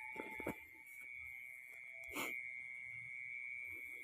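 Faint night-time field ambience: a steady high-pitched insect drone, with a few soft rustles of steps through grass early on and a single brief click about two seconds in.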